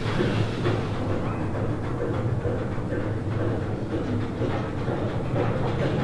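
Mine-ride train cars rolling along their track with a steady rumble.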